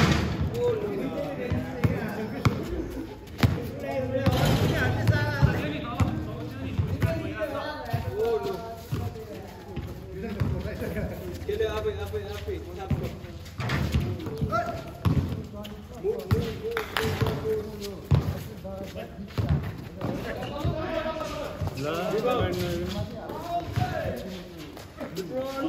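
Players' voices calling out during a basketball game, with a basketball bouncing on a concrete court and several sharp knocks standing out.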